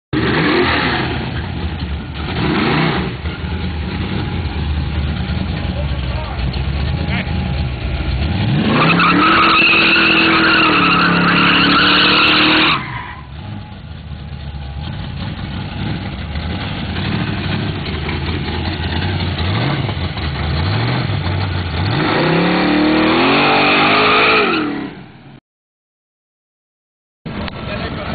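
Pontiac drag car's engine revving through a burnout. It is blipped a few times, then climbs and is held at high revs for about four seconds with tyre squeal, drops back to a low idle, and revs up again near the end before cutting off suddenly.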